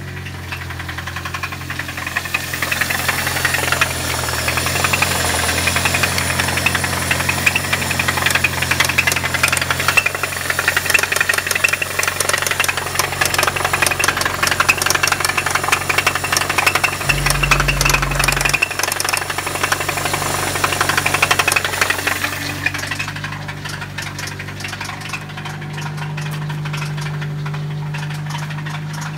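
Toyota Celica engine idling with a loud, rapid knocking rattle over its steady hum. The knocking fades out a few seconds before the end, leaving a smoother idle.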